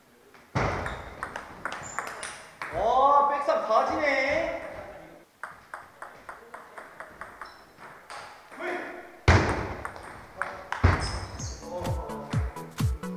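Table tennis rally: the celluloid ball clicking sharply and quickly off paddles and the table. About three seconds in, a loud vocal shout rises over the clicks.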